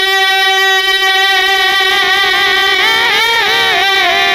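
A man singing Urdu verse into a microphone in a high voice. He holds one long steady note for about two seconds, then breaks into a wavering, ornamented run.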